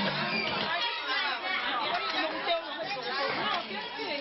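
A crowd of women talking at once: many overlapping voices in a steady babble of chatter.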